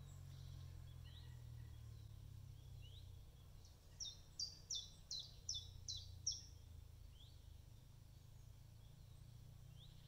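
A small songbird sings one short phrase of about seven quick, high, repeated notes near the middle, and another bird gives a few faint single chirps before and after it, over a low steady rumble.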